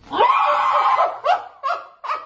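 A woman's high-pitched shriek of laughter, held for about a second, then a few short laughs.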